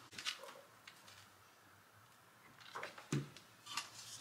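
A few light wooden knocks and taps as a wooden plaque with glued-on wooden block feet is handled and set against the table, the loudest a dull knock about three seconds in.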